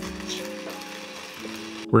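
Weber Key Mk II conical burr grinder grinding coffee, a steady hiss that cuts off suddenly near the end, under soft background music.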